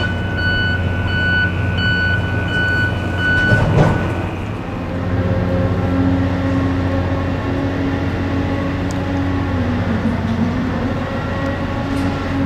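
A heavy vehicle's engine running with a steady low hum, with a reversing alarm beeping repeatedly for the first three or four seconds. There is a single knock about four seconds in.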